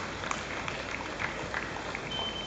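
Scattered clapping from roadside spectators, irregular single claps over a steady outdoor street hum.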